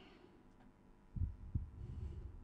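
Low, muffled thumps and rumble coming through a video-call audio feed, like a microphone being bumped or handled, over a faint steady hum: the participant's audio is not getting through, blamed on a bad internet connection.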